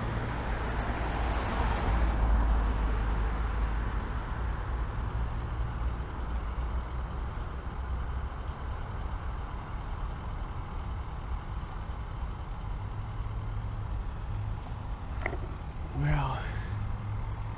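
Steady low rumble of a vehicle engine running, with one short clink near the end.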